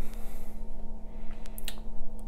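A few light, sharp clicks over a steady low electrical hum.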